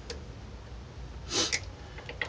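A short breath from a person about a second and a half in, over a low steady hum, with a faint click near the start.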